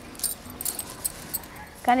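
Light, irregular clinking and rustling, typical of glass bangles jingling on a wrist as hands lift and work through long hair. A woman's voice starts just before the end.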